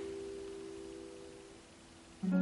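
A chord on a nylon-string classical guitar ringing on and slowly dying away, fading out about one and a half seconds in.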